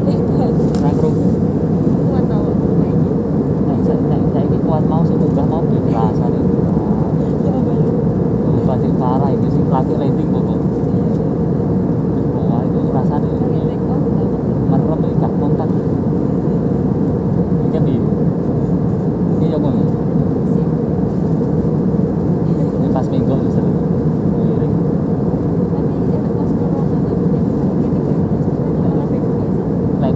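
Steady roar of a jet airliner's cabin in cruise flight, engine and airflow noise heavy in the low end. Faint voices murmur under it at times.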